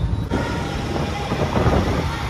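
Distant road traffic: a steady rushing noise with a low rumble, which changes abruptly and grows fuller about a third of a second in.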